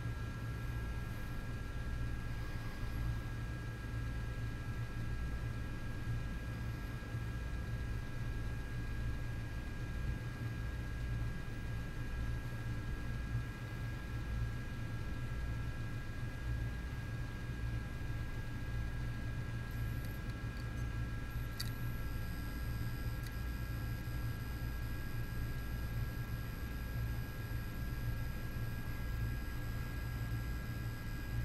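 Opened hard drive spinning its platter while the read/write head grazes over a scratch cut into the platter, a steady buzzing with a constant high whine above it. The drive cannot read the damaged platter and keeps retrying, with the head at risk of a crash.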